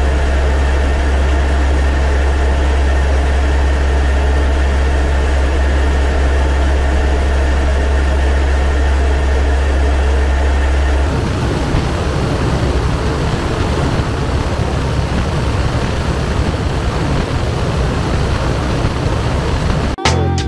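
Steady drone of a C-130H's four Allison T56 turboprop engines heard from inside the aircraft, with a strong deep hum underneath. About halfway through, the sound shifts to a rougher, hissier rush.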